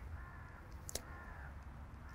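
A faint, drawn-out bird call, with a single soft click about a second in.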